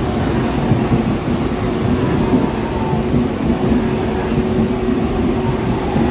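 Medha-equipped EMU local train running at speed, heard from inside the coach: a continuous rumble of wheels on rails with a steady hum of traction-motor tones over it.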